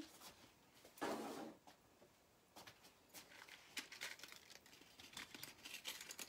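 Faint handling noise: a short rustle about a second in, then scattered small clicks and crinkles as jewelry cards and packaging are moved about.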